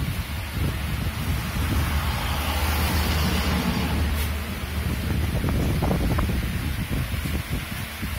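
Wind noise on the microphone: uneven low rumble and rustling from moving air hitting it, with the steady hiss of a room.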